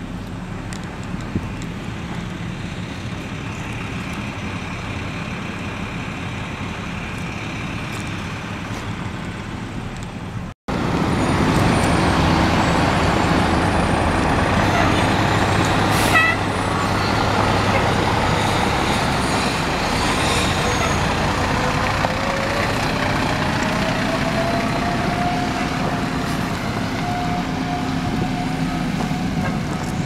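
Heavy fire-truck engines running as the apparatus drives off. Just over a third in, the sound cuts and comes back louder. Near the middle there is a brief sharp blast, and toward the end a single tone rises slowly and then holds steady.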